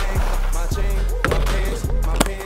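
Skis scraping and hissing over hard, icy snow, with background music's steady drum beat running under it.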